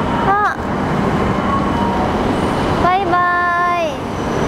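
Green-nosed Tohoku Shinkansen train pulling out of the platform, a steady running noise of the departing train. A short call comes near the start and a long held vocal call about three seconds in.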